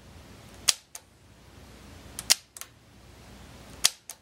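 Small metal toggle switch on a model-railroad switch-control panel being flipped back and forth: three sharp clicks about a second and a half apart, each followed closely by a fainter second click.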